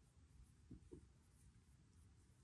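Near silence, with a few faint strokes of a dry-erase marker writing on a whiteboard in the first second.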